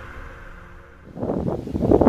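The tail of a music intro fading out, then about a second in, wind rumbling on the microphone.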